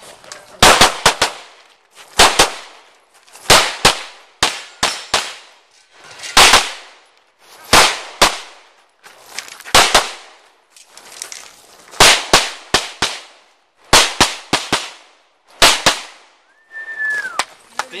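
Pistol shots fired in quick pairs and runs of three or four, with pauses of about a second between groups as the shooter moves between target arrays on a practical-shooting stage. A short falling whistle comes near the end.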